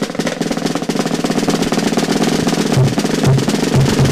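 Live drum roll on a snare drum with cymbal wash, a fast continuous run of strokes that opens a band's song. Low pulsing notes join in about three-quarters of the way through.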